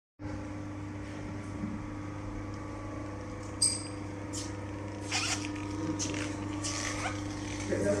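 A steady low electrical hum, with a single sharp click about three and a half seconds in and some rustling handling noises in the last few seconds.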